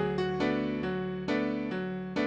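Solo piano playing repeated chords in the right hand, struck about twice a second and decaying, over a held low bass note.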